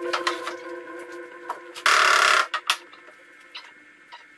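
Galvanized sheet metal being handled and set down on a wooden worktable: scattered clicks and clanks, with one loud rattle about two seconds in.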